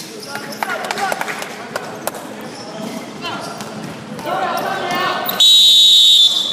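A basketball bouncing on a wooden gym court amid players' voices, then a referee's whistle gives one long, shrill blast near the end, the loudest sound.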